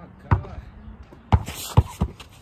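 Basketball dribbled on bare packed dirt: three bounces, one about a third of a second in and two close together near the end.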